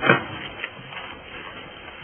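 A short, sudden thump with a rustle just after the start, then a fainter click about half a second later, over low room noise.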